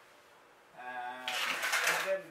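A hand-held trigger spray bottle spritzing a mist of spider-mite treatment onto cannabis plants: a hiss under a second long in the second half, just after a man's voice hums briefly.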